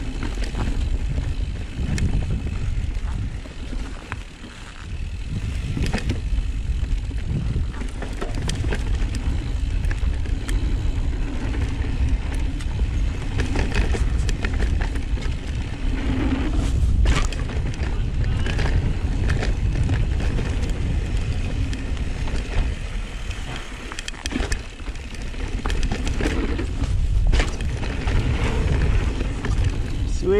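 Mountain bike riding down a dirt singletrack: a continuous low rumble of tyres over dirt and roots, with frequent clicks and rattles from the bike as it goes over bumps. Briefly quieter about four seconds in.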